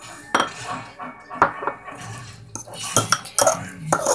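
Irregular clatter of hard objects knocking and clinking together, with several sharp knocks.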